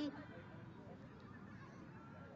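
Faint outdoor ambience with a few scattered, distant short calls.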